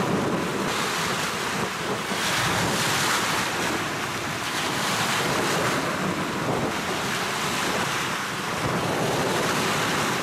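Wind-driven waves on a flooded lake washing and sloshing against the shoreline and tree trunks, swelling and easing every few seconds, with wind rumbling on the microphone.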